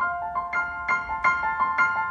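Solo piano played on a digital stage keyboard: a high-register melodic figure of single ringing notes, struck about three a second.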